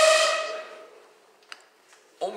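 A man's breathy hum at one steady pitch, fading out about a second in, followed by a faint click near the end.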